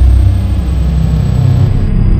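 Logo outro sting: a loud, steady deep rumble with a thin high whine above it.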